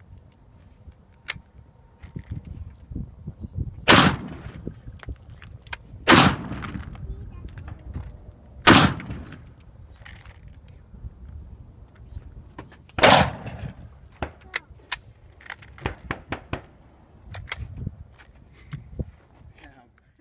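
Molot Vepr rifle in 7.62x54R fired four times as single shots. The first three come about two to two and a half seconds apart and the fourth after a longer pause. Each loud report trails off briefly.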